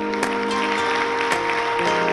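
An audience applauding, mixed with instrumental background music of long held notes.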